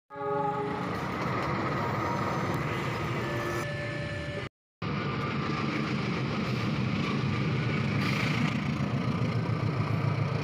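KAI CC206 diesel-electric locomotive running past at close range: a steady low engine rumble with running noise that grows a little louder as it nears. It is preceded, after an abrupt cut, by a few seconds of steady held tones at several pitches.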